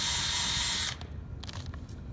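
Cordless drill running with its bit in a hole bored through the gym's wooden floor down to the subfloor: a steady high whine that cuts off suddenly about a second in, followed by a few light clicks.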